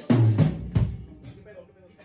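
Rock band rehearsal: a drum-kit hit lands with a low electric bass note at the start, a second hit follows just under a second in, and the sound then dies away to near quiet.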